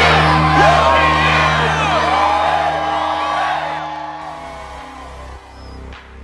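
A crowd of young people cheering and whooping over music with steady low held tones. Both fade out over the last two seconds or so.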